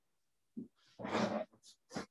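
A person's voice making a few short sounds that are not words, the longest lasting about half a second from about a second in.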